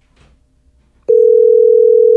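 Call-progress beep of a TextNow internet phone call, played through the computer: one steady tone that starts about a second in and lasts just over a second, the sign that the call is going through.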